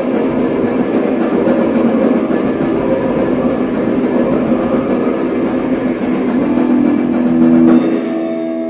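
Hardcore punk band playing flat out: heavily distorted guitar and bass over pounding drums. The music stops abruptly near the end.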